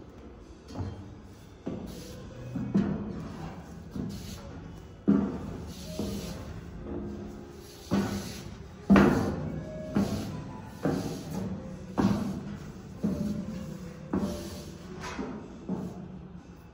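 Footsteps going down the stairs of an echoing stairwell: a steady run of resonant thuds about one a second, each with a short ring after it.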